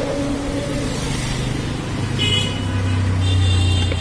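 Street traffic: a motor vehicle's engine drone close by, growing louder in the second half, with brief high tones over it twice.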